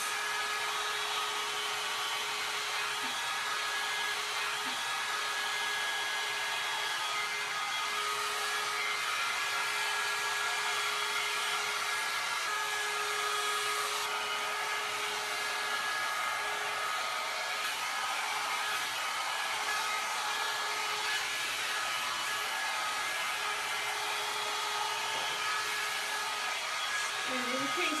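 John Frieda Salon Style 1.5-inch hot air brush running steadily: the even rush of its blowing air with a steady motor hum.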